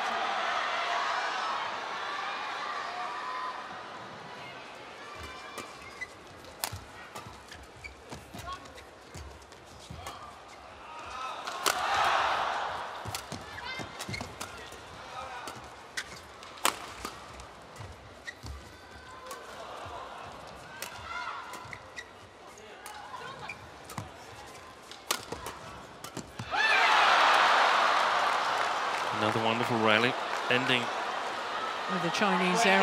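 Badminton rackets striking the shuttlecock in an irregular series of sharp smacks during a long rally, over arena crowd noise. The crowd swells briefly about twelve seconds in and breaks into loud cheering near the end as the point is won.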